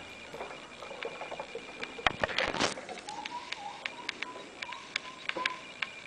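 Dwarf hamster moving about in its plastic cage: scattered sharp clicks and scratches on plastic, with a louder scraping rustle a little past two seconds in. A faint wavering tone runs through the second half.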